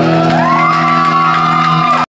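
A rock band's guitars and amplifiers holding a final chord over the PA, with a high tone that rises about a third of a second in and then holds, as the crowd begins to cheer and whoop.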